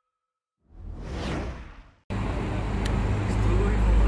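A whoosh sound effect for a logo intro swells and fades. About two seconds in it cuts abruptly to outdoor street ambience: road traffic with a heavy low rumble.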